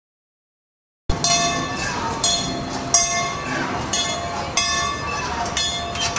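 Small ride-on train running along its track, starting suddenly about a second in: repeated clacks roughly every half second to a second, over steady high ringing tones.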